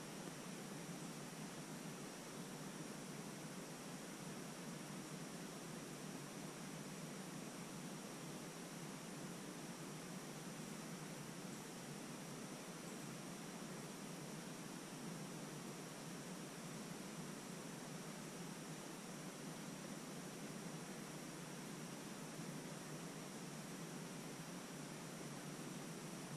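Steady hiss of a GoPro's built-in microphone with a faint high whine in it, no distinct sounds over it; the slow paint pour makes no audible sound.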